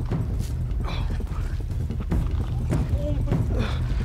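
Cast net being hauled in from the water by its hand line: scattered splashes and clatters over a steady low rumble.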